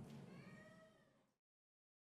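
Near silence: faint room tone with a brief, faint pitched sound about half a second in, then complete silence as the recording cuts off.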